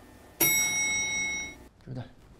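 Lift arrival chime: a single electronic ding about half a second in, its several high tones ringing for about a second before fading.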